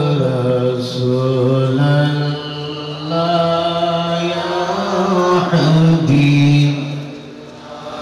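A man's voice chanting in a slow, melodic recitation, holding long wavering notes. It is amplified through a microphone. There is a short breath pause near the end.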